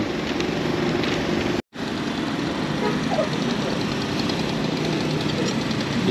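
Road traffic with vehicle engines running, a steady hum and rumble that cuts out completely for an instant a little under two seconds in.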